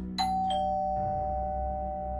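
A two-note doorbell-style chime, ding-dong: a higher note struck, then a lower one about a third of a second later, both ringing on steadily.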